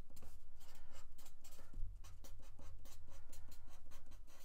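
Black marker pen writing block capitals on a sheet of paper: a quick, continuous run of short strokes, over a faint steady low hum.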